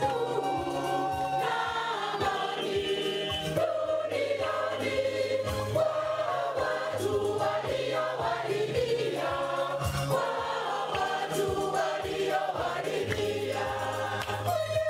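A choir of many voices singing a church hymn together, with a low steady bass note beneath that moves in steps.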